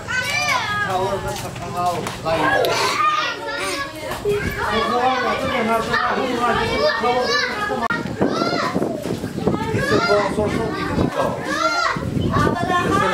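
Children playing: many high voices calling, shouting and chattering over one another without a break.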